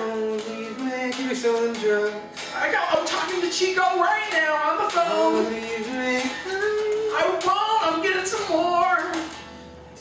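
A man singing over electric guitar and electric bass in a song cover. The singing and playing die down near the end.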